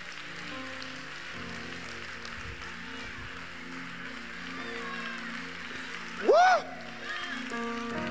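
Sustained keyboard chords played under a congregation's cheering and applause, the chords shifting every second or so. About six seconds in, a single loud rising-and-falling "Woo!" shout cuts through.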